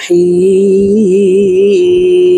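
A man's voice reciting the Bismillah in melodic Quranic chant, holding one long drawn-out note that wavers slightly about halfway through.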